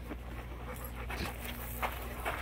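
Dogs panting, with a few short breathy puffs.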